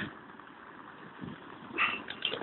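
Faint outdoor street background noise on a phone microphone, with a short sound near the end.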